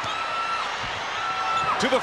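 Arena crowd murmuring steadily while a basketball is dribbled on a hardwood court, with a couple of drawn-out high squeaks.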